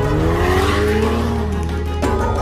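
Ferrari Portofino's twin-turbocharged V8 revving as the car drives past, its note rising through the first second and then falling away, over background music.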